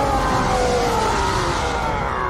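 A huge monster's roar from the anime soundtrack: one long, loud, rough roar that slowly falls in pitch.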